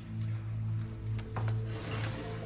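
Background music score: a steady low drone with sustained held tones, with a few faint rustles and a soft click about one and a half seconds in.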